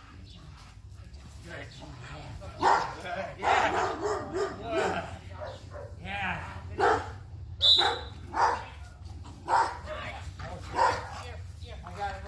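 Dog barking in short, loud bursts about once a second, aggression barks at a decoy in a padded bite suit during protection training.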